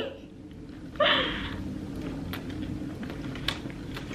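A bite into a fried chicken sandwich about a second in, a short crunchy burst, then quiet chewing with a few faint mouth clicks.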